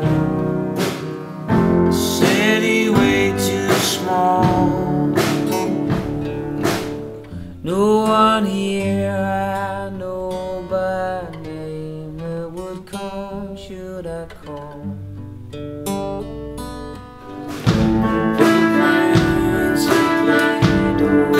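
A man singing along to his own strummed acoustic guitar. The music drops back in the middle and gets louder again near the end.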